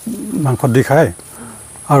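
A man's voice speaking in short phrases, with a pause in the middle.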